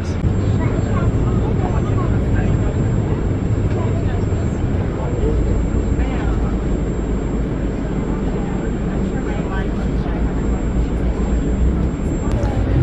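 Inside a moving coach bus: steady low engine and road rumble filling the cabin, with faint passenger voices in the background.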